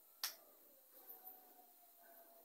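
Near silence broken by a single sharp click about a quarter second in, followed later by faint, indistinct sounds.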